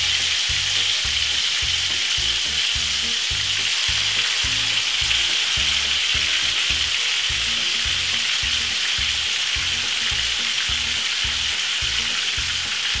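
Chicken pieces frying in hot vegetable oil in a frying pan: a steady, even sizzle.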